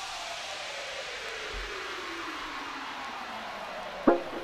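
White-noise sweep from an electronic dance track, falling steadily in pitch on its own, with no beat or melody under it.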